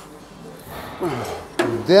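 Mostly quiet gym room tone, with a faint low male voice about halfway through and a man speaking clearly near the end.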